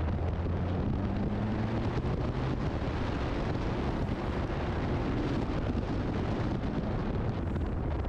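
Alfa Romeo 4C's turbocharged four-cylinder engine running at speed on an autocross course, its note low under a steady rush of wind over an exterior-mounted microphone.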